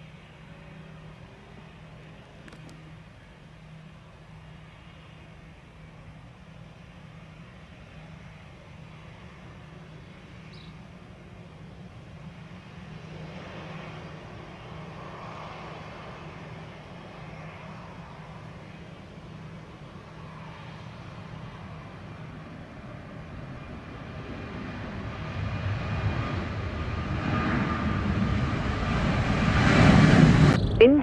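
Twin jet engines of a Boeing 737-900 at takeoff thrust on its takeoff roll. They are faint and distant at first, with a steady low hum beneath, then grow steadily louder over the last several seconds as the jet draws near.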